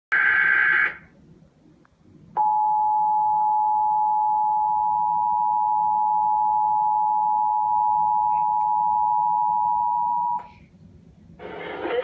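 Emergency Alert System tones from a TV speaker. The alert opens with a brief burst of digital header data tones, then after a pause comes the EAS attention signal, a steady two-tone alarm held for about eight seconds. It cuts off, and a voice begins the alert message near the end.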